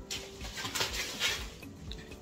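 Plastic film crinkling as a plastic-wrapped corn cob is picked up and handled.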